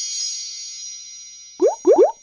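Outro sound effect: bright chime tones ring on and slowly fade, and near the end two short bloops sweep quickly upward in pitch.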